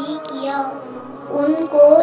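A high voice reciting in a slow, sung melody, holding long, gently wavering notes.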